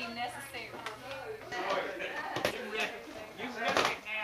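Indistinct voices talking, with a few sharp knocks and crackles from cardboard present boxes being handled. The loudest knocks come near the end.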